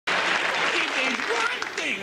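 Studio audience applauding, cutting in suddenly, with voices rising over the clapping in the second half.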